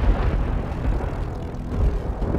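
Thunder rumbling, deep and steady.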